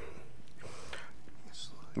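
A quiet pause with a steady low hiss, and a faint breathy whisper with no clear words about half a second in.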